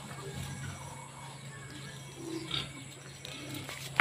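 Faint handling sounds of a plastic rooting ball being closed around a citrus branch, ending in one sharp plastic click as its halves snap shut near the end.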